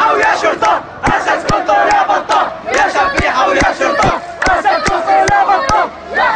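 Crowd of demonstrators chanting slogans together, with rhythmic handclaps about two and a half a second.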